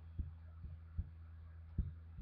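Steady low electrical hum with four soft, dull low thumps spread over two seconds, like light knocks or bumps against the computer or desk that carries the microphone.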